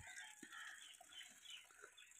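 Near silence, with faint, scattered high bird-like calls in the background.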